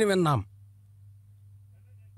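A voice holding a long sung or chanted note that wavers in pitch and falls away about half a second in, followed by a faint steady low hum.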